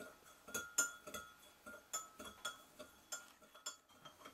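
Metal spoon clinking repeatedly against the sides of a glass measuring cup while stirring salt into water to dissolve it. The clinks come irregularly, a few a second, each with a brief ring of the glass.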